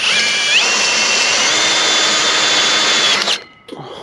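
Cordless drill boring a hole through a galvanized steel post. The motor's whine steps up in pitch twice within the first second and a half, then stops abruptly a little after three seconds.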